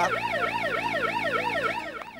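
Warbling siren sound effect, a fast yelp whose pitch sweeps up and down about four times a second over a steady low hum, cutting off at the end.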